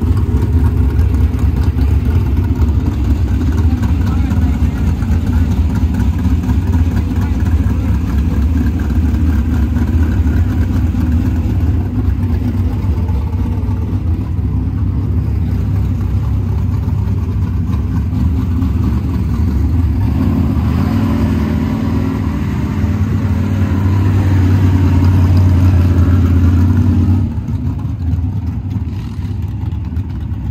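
Dirt modified race car's engine running steadily, growing louder and fuller for several seconds about two-thirds of the way through, then dropping off suddenly a few seconds before the end as the car drives away.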